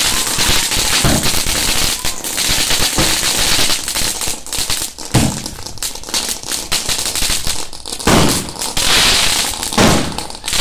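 Fireworks going off: a dense, continuous crackling of bursting stars, with louder bangs every couple of seconds.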